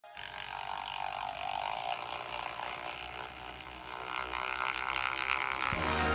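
Secura electric milk frother running, its whisk spinning in a jug of milk with a steady whirring drone that climbs in pitch about four seconds in. Intro music comes in just before the end.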